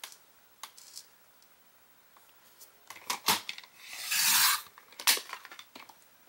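Fiskars rotary paper trimmer cutting a sheet of kraft card: a few sharp clicks as the paper and cutting rail are handled, then one short swish of the blade running along the cut about four seconds in, and a single click after it.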